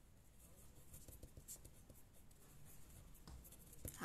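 Faint scratching of a pen writing on a sheet of paper, in short strokes.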